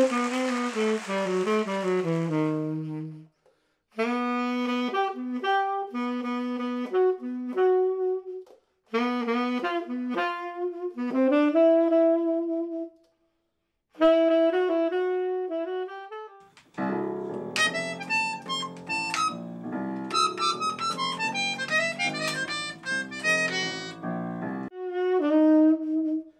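Jazz saxophone playing melodic phrases on its own, broken by short pauses. About seventeen seconds in, fuller chordal accompaniment joins for several seconds, then the saxophone carries on alone.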